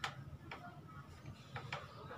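Handling clicks from a freshly cleaned trumpet: a few sharp clicks, the loudest right at the start, the next about half a second in and another about a second and a half in.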